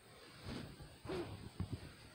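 Quiet room with a few faint, soft handling rustles, about half a second and a second in, as a whiteboard is moved.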